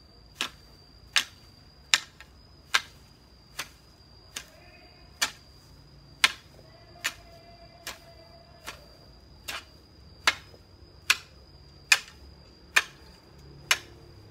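Long-handled hoe chopping into grassy soil in a steady rhythm, a sharp knock a little more than once a second. A steady high-pitched whine runs underneath.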